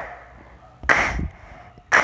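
Three short, breathy, unpitched puffs from a woman's voice, about a second apart.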